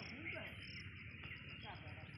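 A steady chorus of insects chirping, with a high, pulsing trill above it.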